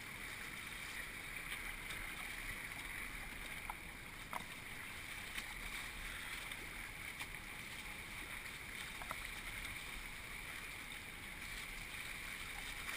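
Fast brown river water rushing and splashing around a whitewater kayak as it is paddled, a steady wash with a few faint knocks.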